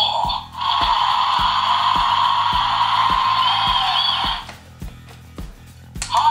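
An InterAction Hank ankylosaurus toy from Dinosaur Train plays a loud, noisy sound effect through its small speaker. The sound starts just after the beginning, lasts nearly four seconds, then cuts off. Background music with a steady beat plays throughout.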